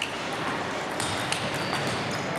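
Table tennis rally: the plastic ball gives a few sharp ticks as it is struck by the rackets and bounces on the table, against a steady background of a large hall.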